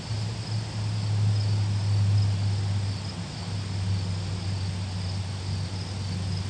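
Crickets chirping, a high pulsing trill that repeats steadily, over a louder low steady hum.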